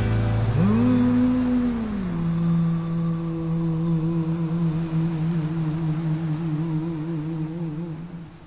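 The final held note of a soul ballad: a single voice hums a long note that swoops up, then drops to a lower pitch about two seconds in and is held with a widening vibrato. The backing band fades away beneath it, and the note fades out near the end.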